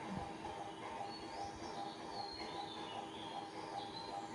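Quiet background: a steady faint hum with a few faint high chirps about a second to two and a half seconds in.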